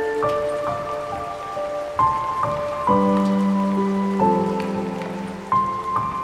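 Slow, melancholic solo piano over a steady hiss of rain: a sparse melody of single notes, joined about halfway by fuller chords with a low bass note.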